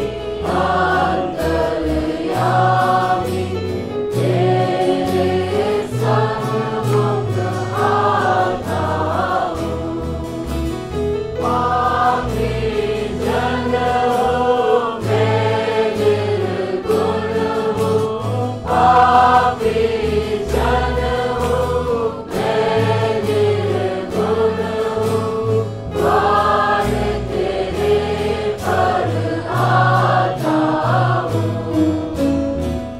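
A choir singing a gospel worship song over bass-heavy instrumental accompaniment.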